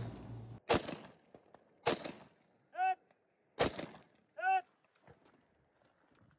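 Three single rifle shots from a WWSD2020 AR-15-pattern rifle, a second or more apart. The second and third shots are each followed about a second later by a short metallic ping of a bullet striking a distant steel target.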